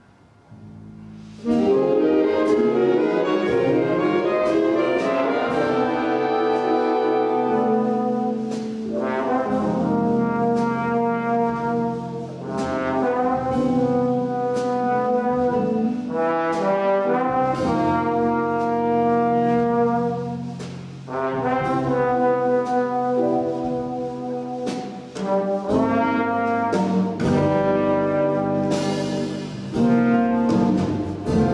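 Jazz big band coming in together about a second in: full brass and saxophone section chords, each held and then shifting every second or two, with the rhythm section underneath.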